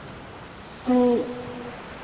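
A short hummed "mm" from a person's voice, held briefly and dropping slightly at the end, over a steady hiss of background noise.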